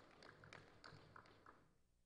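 Near silence with a few faint, scattered hand claps from an audience, irregularly spaced and dying away about a second and a half in.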